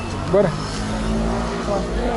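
A motor vehicle passing close by: a low rumble with a steady engine hum.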